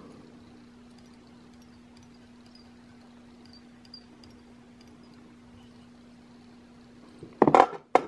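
Quiet room tone with a steady low hum and a few faint ticks as fly-tying thread is handled at the hook eye with a small hand tool. Near the end comes one short, loud handling noise.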